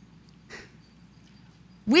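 A pause in a woman's talk: faint room tone, a short soft breath about half a second in, then her voice starts again near the end.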